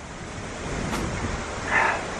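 Wind blowing across the microphone: a steady rush with a low rumble that strengthens around the middle, and a brief louder hiss near the end.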